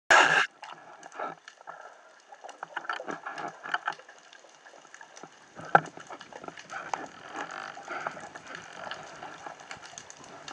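Underwater noise picked up through a camera housing mounted on a speargun: a loud burst in the first half second, then irregular clicks, knocks and crackles over a faint hiss, with one sharp click just before six seconds.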